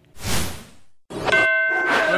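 A TV programme's transition sound effect: a short rush of noise, then about a second in a sudden bright metallic ding that keeps ringing on several steady tones.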